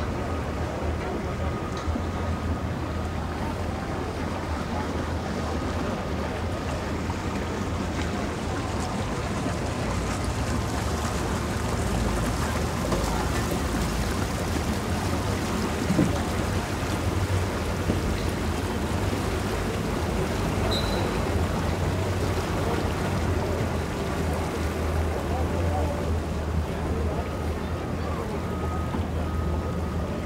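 A boat motor runs steadily with a low hum over water and wind noise. A faint knock comes about halfway through.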